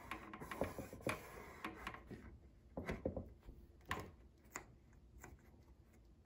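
Hands smoothing and pressing adhesive wood-grain contact paper down onto a tree collar: faint, irregular rubbing and small ticks, a few sharper ones past the middle.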